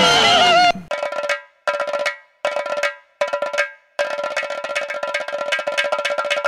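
Shouting voices stop under a second in, and metallic, bell-like percussion starts the intro of a dance song: four short rolls with gaps between them, then a fast, steady run of strokes from about four seconds in.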